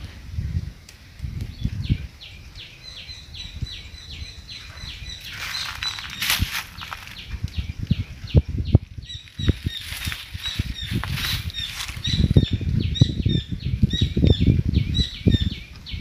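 Outdoor field recording with wind buffeting and handling rumble on the microphone, and two louder spells of leaf rustling. Behind it, a high chirping call repeats about four times a second from a few seconds in.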